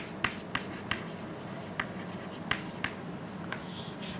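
Chalk writing on a chalkboard: a string of short, irregular taps and clicks as letters are written, with a brief scratchy stroke near the end.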